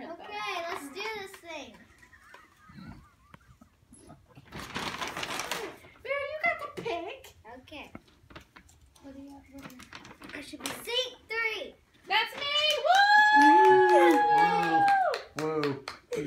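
Young girls' voices talking and exclaiming in a small room. About five seconds in there is a second-long burst of rustling noise, and near the end one voice holds a high note for about two seconds.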